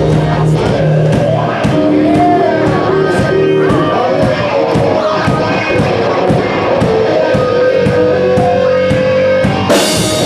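Live rock band playing loudly: electric guitars holding and bending notes over a drum kit with steady cymbal strikes. A loud crash comes near the end and the band plays on fuller.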